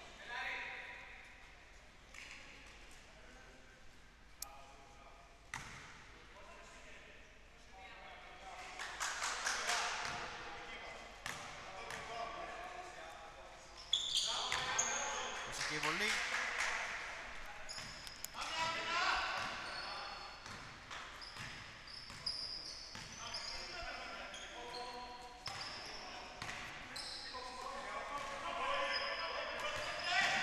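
Live basketball game sounds in a sports hall: a basketball bouncing on the hardwood floor, short high squeaks of sneakers, and players' voices calling out, with the sound echoing in the hall. It grows busier from about eight seconds in.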